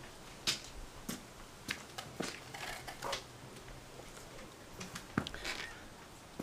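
Scattered light knocks, clicks and rustles of a guitarist sitting down on a stool and settling an acoustic guitar at the microphone.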